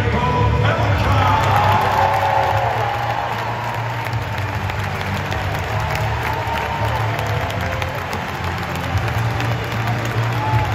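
Loud music with a heavy, steady bass playing over an arena's sound system, with the crowd cheering and applauding a player's walk-out.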